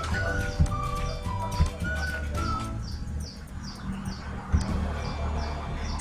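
Soft background music with a few held high notes, then a run of short, evenly spaced chirps, over a steady low hum. A few faint clicks, likely mouse clicks, come through along with it.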